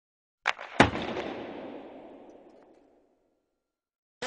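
Two sharp bangs about a third of a second apart, the second louder, with a long echoing tail that dies away over about two seconds. It is an edited-in transition sound effect set between two goal clips.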